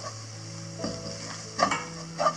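A spoon stirring and scraping scrambled egg and masala frying in a nonstick pan, with a light sizzle; two louder scrapes come about a second in and near the end.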